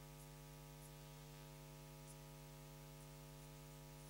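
Near silence: a steady low electrical hum with faint hiss, and a few tiny faint ticks.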